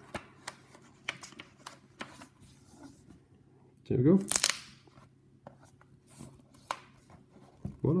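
A sheet of notebook paper rustling and a few light, sharp clicks as the loose page is handled and fitted back into a magnetic-page notebook.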